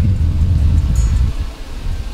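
Loud, uneven low rumble that dies down about a second and a half in.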